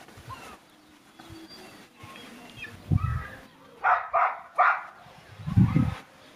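Three quick animal calls in close succession about four seconds in, with low thuds shortly before and near the end.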